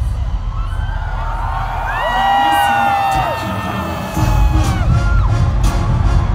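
Live concert music over a large PA, heard from within the crowd, with the audience cheering and whooping; a heavy bass beat comes back in about four seconds in.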